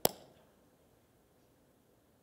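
A single sharp hand clap right at the start, with a short echo dying away, followed by quiet room tone.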